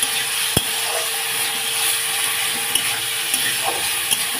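Sliced onion and diced potato sizzling steadily in mustard oil in an iron kadhai, with one sharp knock about half a second in and a faint steady hum underneath.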